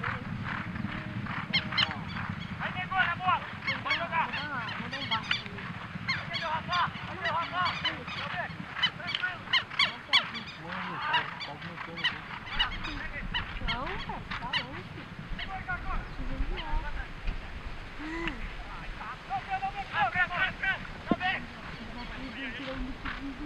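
Birds honking over and over in a dense series of short, bending calls, with the sharp knocks of galloping polo ponies' hooves on turf.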